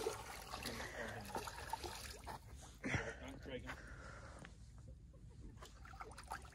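Faint water splashing and dribbling as a hooked rainbow trout thrashes at the surface, with one louder splash about three seconds in.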